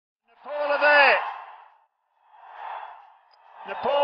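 A single voice calls out one drawn-out word that falls away at the end, followed by a brief breathy rush of noise.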